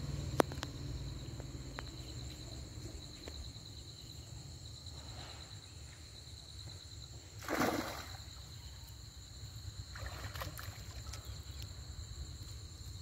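Water sloshing and splashing around a man wading in a river with a cast net, with one louder splash about seven and a half seconds in. A steady, high insect chorus runs underneath.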